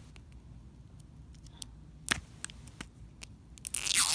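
A plastic toy ball is handled, with a few small clicks. Near the end comes a loud, brief tearing as the ball's sealing sticker is ripped open.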